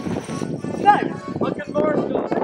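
Boys shouting ("Will! No!", "I can Morris dance!") over a quick patter of light knocks and clicks.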